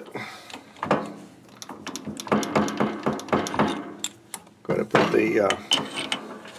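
Metal clicks and knocks from handling a lathe drill chuck and tailstock as they are set up on the lathe bed, with a stretch of rapid clicking in the middle.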